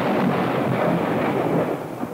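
Loud, steady rumbling roar on the film soundtrack, the sound effect for detonation (engine knock): the violent collision of two flame fronts in a cylinder. It eases slightly near the end.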